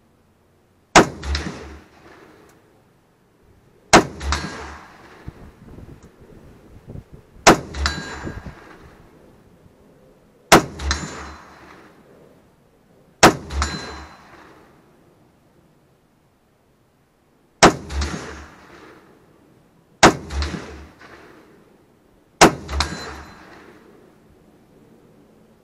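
Eight rifle shots from an SKS (7.62×39 mm semi-automatic), spaced about two to four seconds apart, each followed within half a second by a second report and a decaying tail. A faint metallic ring follows several of them, typical of bullets striking a steel target.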